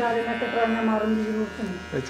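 Electric beard trimmer buzzing steadily, with a voice talking over it.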